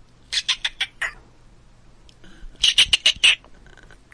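Squirrel chattering: two quick bursts of about six sharp, high chirps each, the second burst, past the middle, louder than the first.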